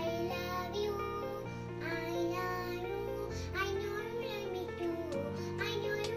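A young girl singing a song over instrumental accompaniment, her voice gliding from note to note above sustained chords that change about every two seconds.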